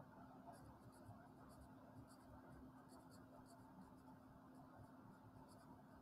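Faint strokes of a Sharpie felt-tip marker on paper as letters are written by hand: short, scratchy strokes, a few each second, with small pauses between words.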